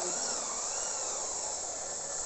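Electric motor of a Taiwan-made wood spindle moulder running steadily, a high whine with a faint tone wavering slightly in pitch.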